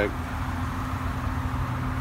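2007 BMW X5 idling: a steady low hum with no change in pitch.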